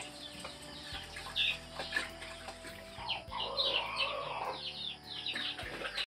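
Domestic fowl clucking and calling, busiest from about three seconds in until nearly five seconds; the sound cuts off suddenly at the end.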